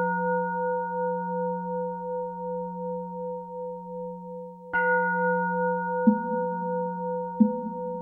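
A struck Buddhist bowl bell ringing with a long, slowly fading hum. It is struck again about five seconds in, followed by two short knocks about a second apart near the end.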